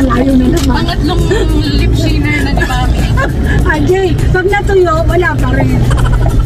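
Voices inside a car's cabin over the steady low rumble of the vehicle running.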